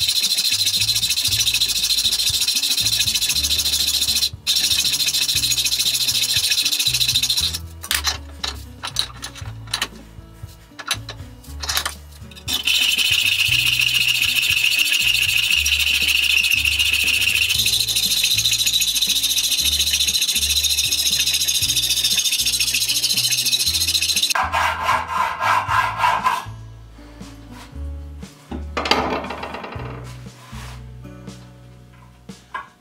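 Hand hacksaw cutting through a metal bar held in a bench vise: a steady rasp with a high ringing note from the blade, broken by a few seconds of halting strokes in the middle. Near the end it turns to several quick short strokes as the cut goes through, then the sawing stops and a few light knocks follow.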